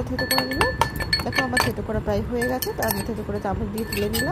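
A utensil clinking quickly and repeatedly against a small steel cup as mint leaves are crushed in it, with a metallic ring after some strikes. A woman's voice runs over it.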